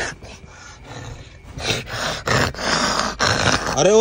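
A person making harsh, rasping growling noises. It starts about a second and a half in, lasts about two seconds, and carries no clear pitch.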